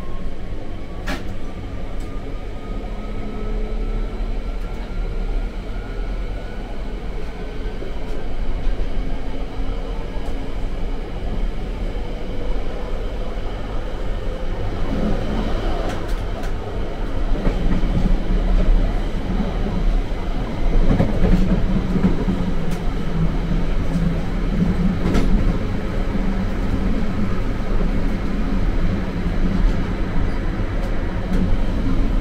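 London Underground Central line 1992-stock train running, heard from inside the carriage. A thin whine rises in pitch over the first several seconds as the train accelerates, then the rumble of wheels on the track grows louder from about halfway.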